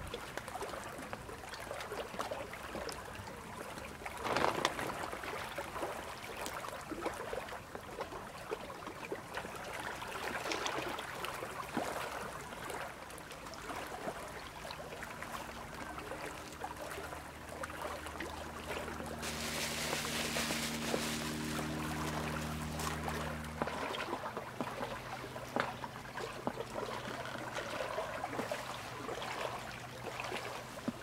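Small lake water trickling and lapping at a gravel shore, with plastic-bag crinkling as a bag of boilies is handled. A low steady hum joins in the middle and cuts off abruptly.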